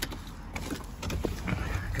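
Rustling and scattered light knocks and clicks of a person climbing into a car's driver seat through the open door, over a steady low rumble of handling noise on the microphone.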